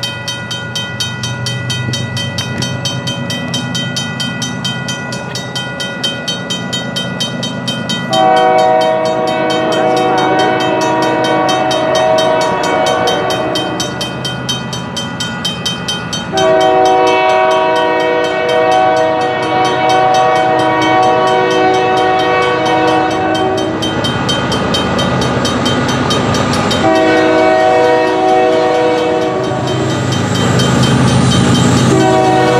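A Griswold/RACO mechanical crossing bell ringing steadily, joined about eight seconds in by the lead locomotive's Nathan K5HL five-chime horn, which sounds three long blasts: the first about five seconds long, the second about seven, the third starting near the end. The bell keeps ringing under the horn, with the low rumble of the approaching diesel locomotives underneath.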